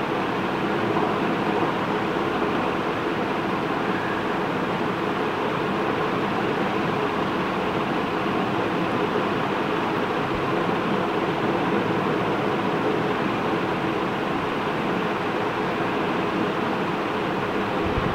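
Steady mechanical hum and hiss of room background noise, even and unbroken throughout.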